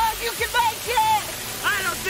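Voices speaking in short, fairly high-pitched phrases over a steady hiss.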